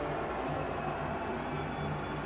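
A steady low hum with room noise in a press room, during a pause in speech.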